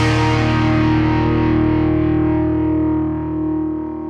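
Closing rock theme music ending on a final distorted electric guitar chord that is held and rings out, its brightness fading away over the few seconds.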